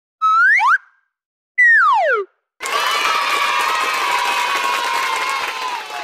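Two cartoon-style sound effects, a quick rising pitch glide and then a falling slide, followed by about three seconds of a group of children cheering and shouting, which fades out at the end.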